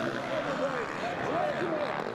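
Motocross bike engines revving up and down on track, their pitch rising and falling continuously as the riders work the throttle.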